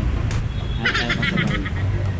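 Low, steady motorcycle engine and traffic rumble from a bike moving through slow traffic. About a second in, a brief high-pitched wavering squeal cuts across it.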